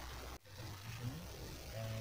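Faint hiss from the car speakers, cutting out abruptly for a moment about half a second in. Then a recorded dashcam clip starts playing through the car radio by FM transmitter, faint and low, with a man's voice in it.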